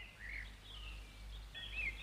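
Faint birdsong: a few short chirping bird calls over a low steady hum.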